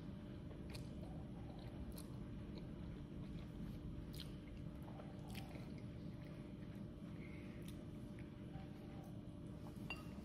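Faint chewing of a mouthful of noodles, with a few soft clicks scattered through, over a low steady room hum.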